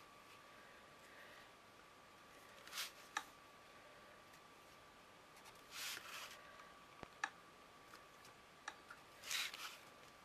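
Felt-tip pen drawn along a ruler on card in three short scratchy strokes about three seconds apart, with a few light clicks of pen and ruler on the tabletop between them.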